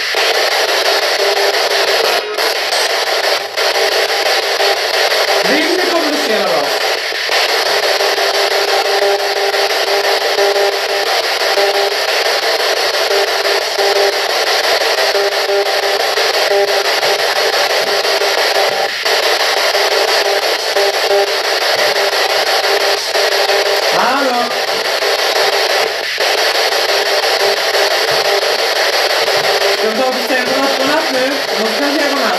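P-SB11 spirit box sweeping through radio stations: a steady loud hiss of radio static with occasional clicks, and brief voice-like snatches of broadcast sound about six seconds in and again near 24 seconds.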